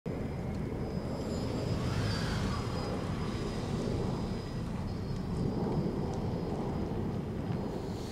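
Steady low rumble of outdoor traffic ambience.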